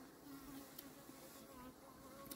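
Faint buzzing of honeybees flying close by, the hum wavering in pitch as they come and go.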